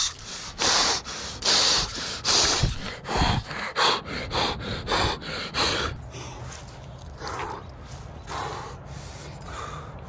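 A man breathing hard and fast, gasping in and out, out of breath from the excitement of fighting and landing a big fish. About ten quick, loud breaths come in the first six seconds, then softer breathing over a faint low steady hum.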